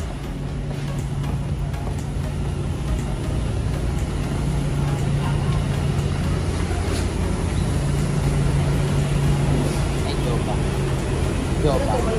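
A motor running with a steady low hum over a rumbling background, growing slightly louder, with a brief dip a little past the middle.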